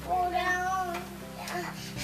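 A baby's high-pitched drawn-out vocal squeal, rising and falling over about a second near the start, with a second short one at the very end.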